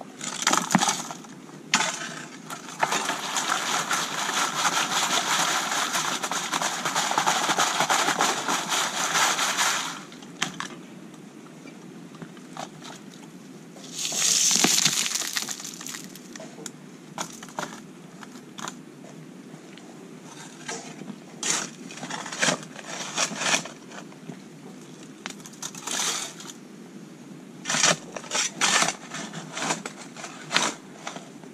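Creek gravel being dug by hand and screened: a shovel scraping and striking stones, with scattered clicks and clatter of pebbles. About three seconds in there is a spell of about seven seconds of continuous rattling as gravel is shaken in a wire-mesh sieve, and a shorter burst of clatter follows a few seconds later.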